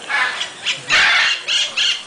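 A bird squawking loudly: a sudden run of about five harsh, rasping calls, the longest a second in. These are the calls that startled the family.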